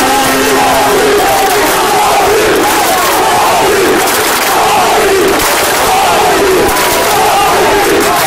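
Loud dense crowd of football supporters chanting and shouting together, heard from right inside the crowd, continuous throughout.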